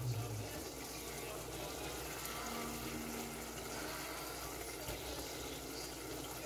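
Shrimp in a thin pepper sauce simmering in a saucepan on the stove: a steady bubbling.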